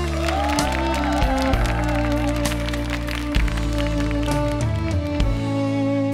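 A live band plays the instrumental introduction of a slow trot ballad: sustained keyboard chords over bass and drums, with a wavering lead melody in the first couple of seconds and occasional drum and cymbal hits.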